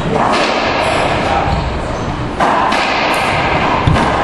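Racquetball thumps echoing off the walls of an enclosed court, over a steady noisy background. The loudest hit comes a little past halfway, with a low thud near the end.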